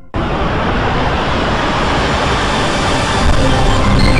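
A Windows startup sound stacked at many pitches at once, from several octaves down to slightly up, smeared into a loud, dense rushing noise. It cuts in suddenly just after the start, holds steady and grows slightly louder near the end.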